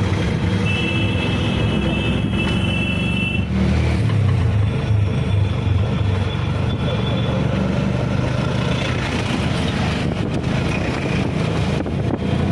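Auto-rickshaw engine running steadily under way, heard from inside the open cabin, with street traffic around it. A high steady tone sounds for a few seconds near the start.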